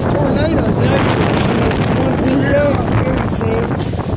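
Wind blowing across a phone's microphone, a loud steady rushing noise, with indistinct voices faintly underneath.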